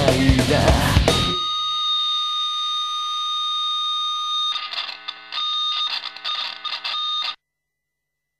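The end of a heavy rock song: the full band with guitar stops about a second in, leaving a steady held high tone that then breaks into choppy stop-start fragments and cuts off suddenly shortly before the end.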